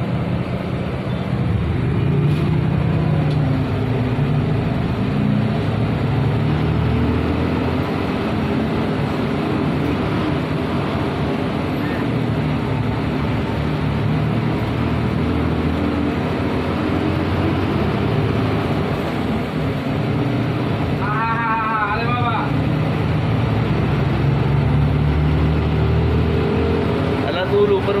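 Minibus engine running and road noise heard from inside the cabin as it drives through traffic: a steady low drone with shifting engine hum.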